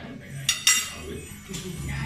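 Cutlery clinking against a dinner plate: two sharp clinks close together about half a second in.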